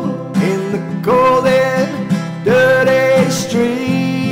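Acoustic guitar song: strummed guitar chords under a voice singing long, held notes that glide from pitch to pitch, in two phrases.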